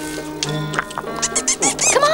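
A cartoon animal's high squeaky chattering, in quick chirps that bend up and down, starting near the end over held background music. A few short ticks come just before the chirps.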